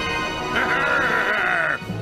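A villain character's drawn-out, wavering vocal cry, lasting about a second, over background music.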